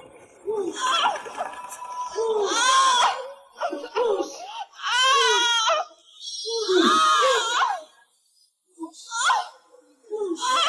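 A woman wailing and crying out in a string of loud, high-pitched, arching cries, about six of them, with short breaks between.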